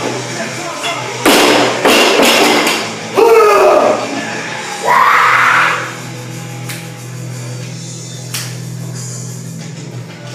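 Rock music playing throughout, with a loud crash about a second in as a loaded barbell with bumper plates is dropped from overhead onto the floor. Two loud shouts follow, a few seconds apart.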